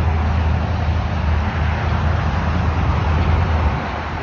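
Steady low rumble with an even hiss over it: outdoor vehicle noise.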